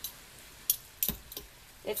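Metal forks shredding slow-cooked pork in a crock pot, giving a few short clinks as they knock against each other and the pot about a second in.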